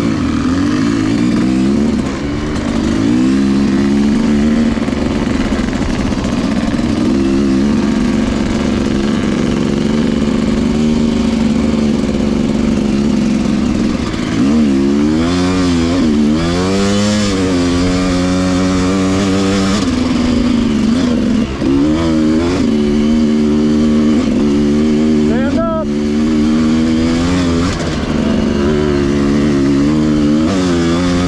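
Dirt bike engine running under way at trail speed, its pitch rising and falling with the throttle. Sharper revs come twice about halfway through, and a quick rev-and-drop near the end.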